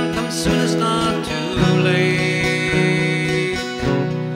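Acoustic guitar strummed in a steady rhythm, chords ringing between the sung lines of a folk ballad.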